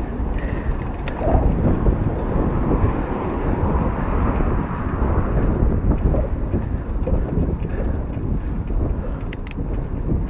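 Wind rushing over the microphone of a camera riding on a moving bike, a loud, steady rumble with the bike's road noise underneath.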